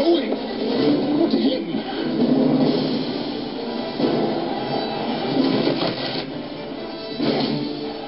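Trailer soundtrack music with voices mixed in underneath.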